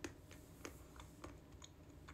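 Mouth-closed chewing of a crunchy snack with almonds in it: faint, irregular crunching clicks, the loudest right at the start, then smaller ones about every half second.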